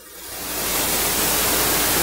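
Steady hiss of recording noise that fades up over the first half second and then holds level.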